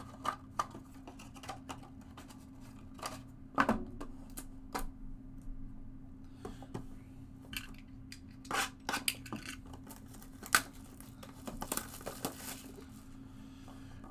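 Cardboard trading-card boxes and plastic card holders being handled on a table: scattered light clicks and knocks, with a few sharper knocks now and then as the boxes are moved and picked up.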